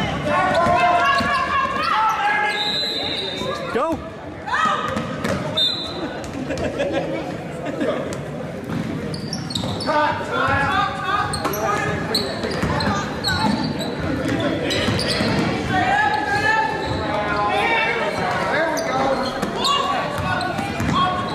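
Basketball being dribbled and bounced on a hardwood gym floor, with voices calling and shouting throughout, all echoing in a large gym.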